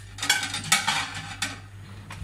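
Dinner plates clinking and clattering against each other as one is lifted out of a stack in a kitchen cupboard, with a few sharp clinks in the first second and a half.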